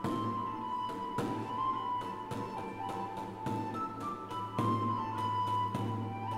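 Instrumental Renaissance chamber music: lutes plucking chords over a bowed bass viol, with a high melody held note by note above them.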